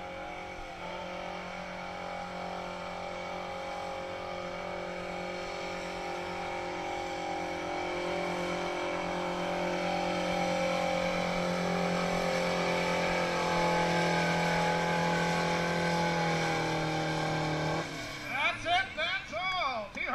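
Cockshutt tractor engine labouring under full load as it drags a weight-transfer pulling sled, a steady note that grows louder as the tractor comes down the track. The engine note cuts off suddenly about two seconds before the end as the pull finishes, and an announcer's voice follows.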